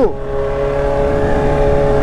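Kawasaki Z900RS inline-four engine running at steady revs under way, a constant hum that holds its pitch.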